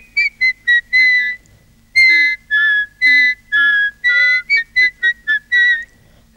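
A person whistling a tune in clear, separate notes, a few quick ones first and then longer ones, with a short pause about a second and a half in.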